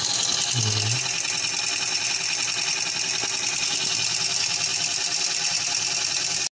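Model vertical steam engine with a rotary valve running on live steam: a steady, fast hissing beat of exhaust steam.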